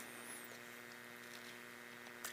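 Faint, steady electrical mains hum from the sound system, with no other sound standing out.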